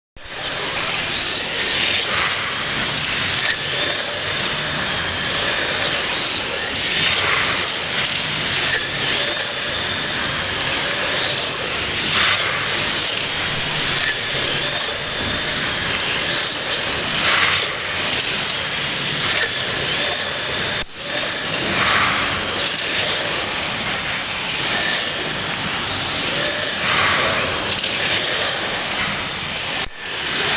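1/32-scale slot cars racing on a multi-lane routed track: the high whine of their small electric motors, swelling each time a car passes, every second or two, with one brief dip about two-thirds of the way through.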